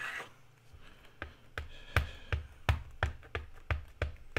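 Clear acrylic stamp block tapped repeatedly onto an ink pad to ink the stamp: a run of light taps, about three a second, starting about a second in.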